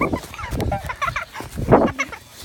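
Children's short high yelps and cries during a rough chase and scuffle, with a loud rough scuffing burst near the end.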